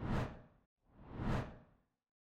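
Two whoosh sound effects about a second apart, each swelling up and fading away within about half a second.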